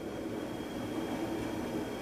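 Steady, even rushing background noise with a faint high whine running through it, and no distinct knocks or events.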